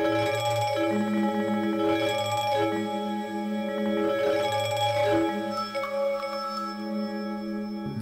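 Camel Audio Alchemy software synthesizer playing a sustained, bell-like chord whose low notes change every two seconds or so, its sound steered by tilting a Wii Nunchuk.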